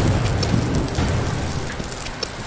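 Rain and thunder sound effect: a low thunder rumble that fades away over steady rain.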